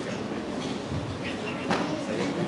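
Steady hall background of indistinct murmur and room noise, with one sharp click about three-quarters of the way through.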